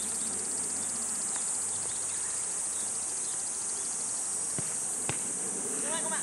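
A steady, high-pitched drone of summer insects, with two sharp thuds about half a second apart near the end, a football being kicked.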